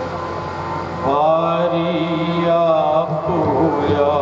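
Sikh devotional hymn singing (kirtan): a voice holds a long, wavering sung phrase over a steady drone, starting about a second in.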